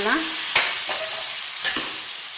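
Slotted metal spoon stirring water into hot oil-separated masala in a metal kadai, the liquid sizzling steadily as it meets the hot oil. A sharp clink of the spoon against the pan comes about half a second in, with a few lighter scrapes and knocks after.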